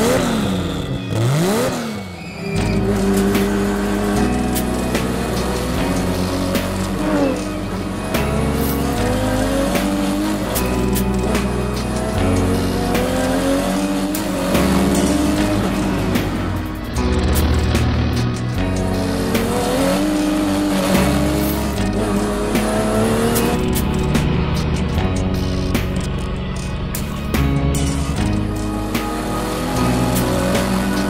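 Background music with the race car's turbocharged 2JZ straight-six laid over it. The engine revs up in repeated rising sweeps through its gears, climbing again after each shift.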